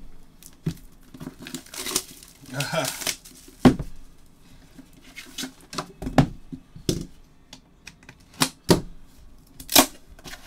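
Cardboard trading-card hobby box being unsealed and opened by hand. A tearing, crinkling stretch comes in the first few seconds, then several sharp taps and knocks as the box is handled and its lid lifted.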